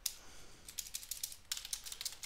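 Typing on a computer keyboard: irregular key clicks, with a quick run of keystrokes about one and a half seconds in.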